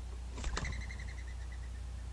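Mourning dove taking off from the nest: a few quick sharp flaps about half a second in, then a brief whistle that fades out within a second.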